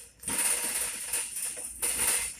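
Shopping cart rolling over a concrete warehouse floor, its wheels and wire basket rattling steadily.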